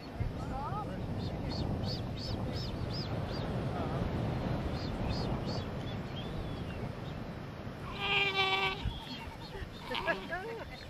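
Galapagos sea lion pup giving one loud, clear, pitched call, just under a second long, near the end: a pup calling for its mother. Fainter short calls come in the first half over a steady low background hiss.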